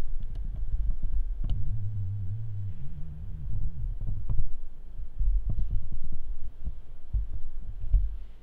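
Handling noise on the camera's microphone as it is tilted down and repositioned: a low rumble with scattered knocks and clicks.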